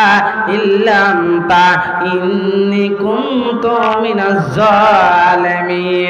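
A man chanting a slow, drawn-out melodic invocation into a microphone, holding long notes that bend and waver, with short breaks for breath.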